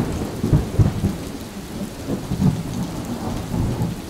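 A thunderstorm: steady rain with uneven low rumbles of thunder.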